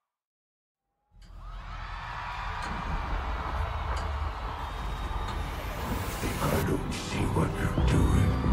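About a second of silence, then the opening of a live concert recording starts abruptly and swells in loudness: a low rumbling drone under a haze of crowd noise.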